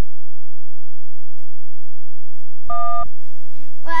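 A single short electronic beep, about a third of a second long, near the end: a steady tone with several pitches at once, the kind of cue beep that separates clips on an edited videotape reel.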